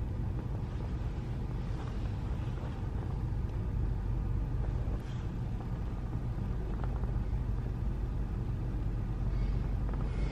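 A steady low rumble under the whole stretch, with a few faint rustles of bedding as a sleeper shifts under a blanket.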